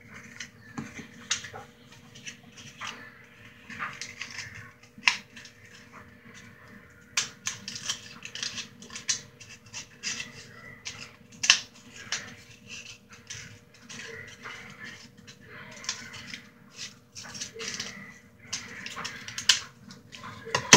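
Scissors snipping and cupcake liners crinkling as they are cut and handled: a run of small, irregular clicks and rustles.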